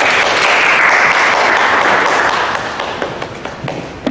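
Audience applauding, loud at first and dying away over the last second or two.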